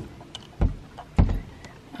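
Two dull thumps about half a second apart, the second louder, preceded by a light click: an antenna pole and its mount being handled and knocked against the side wall of a travel trailer.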